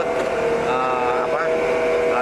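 A man's voice holding a long, steady hesitation sound, an 'eeeh', as he starts to answer.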